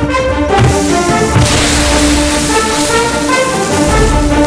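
Action film score playing, with a hiss of spraying dirt laid over it from about a second and a half in, lasting nearly two seconds.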